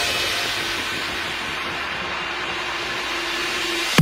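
Electronic dance music transition: a steady, fading synth noise wash with a faint held tone, in the gap after a bass drop. A heavy bass hit starts the next section right at the end.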